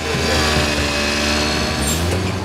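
Small motor scooter engine running steadily as the scooter rides past close by.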